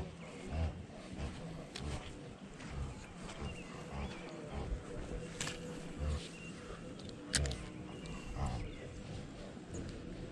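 Wind buffeting the camera microphone in irregular low rumbles as a spinning rod and reel is worked, with two sharp clicks, one about five seconds in and one about seven seconds in.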